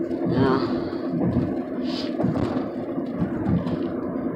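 Steady road and engine noise inside a moving car's cabin at highway speed. A short wavering voice sound comes about half a second in.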